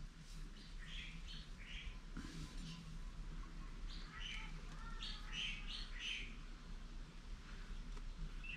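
Birds chirping faintly in the background: scattered short chirps throughout, with a few thin gliding whistles about four to five seconds in.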